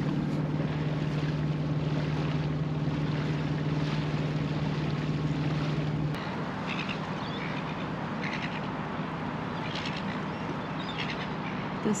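A boat's engine running with a steady low hum, which cuts off suddenly about six seconds in. After that there is background noise with a few short bird calls.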